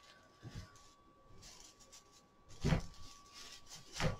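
Quiet rustling and handling of a dyed broomcorn bundle as twine is wrapped around it and pulled tight, with a slightly louder rustle a little under three seconds in.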